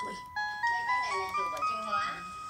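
Casio VL-1 monophonic mini synthesizer played through a small amp with delay: one held note, then a quick run of single notes stepping upward in pitch, about four to five notes a second.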